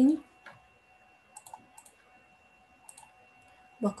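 A handful of faint, short clicks from a computer mouse, scattered irregularly, over a faint steady electrical hum; the end of a spoken word is heard at the very start.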